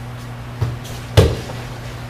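A person falling onto a padded dojo mat as an aikido partner takes him down to a face-down pin: a light thud about half a second in, then a louder thump just after a second.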